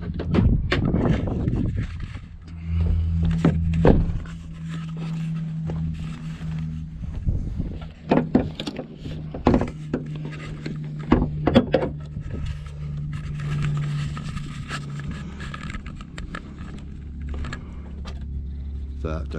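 A series of knocks and clunks as a motorhome's bonnet is released from the cab and lifted open, over a steady low hum.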